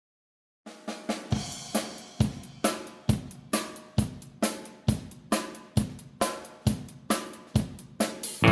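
Music: a drum-kit intro, with kick, snare and cymbals playing a steady beat of a little over two hits a second, starting just under a second in.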